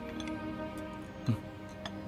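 Soft background music with held notes and a light ticking rhythm, with a short low sound just over a second in.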